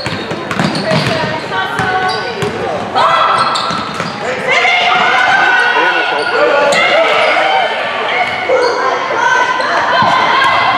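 Basketball bouncing on a hardwood gym floor during play, with spectators' voices calling out over it, getting louder about three seconds in, all echoing in a large gym.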